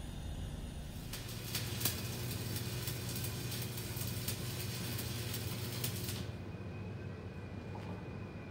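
Electric arc welding: a steady crackling arc that starts about a second in and cuts off suddenly about six seconds in, over a steady low hum.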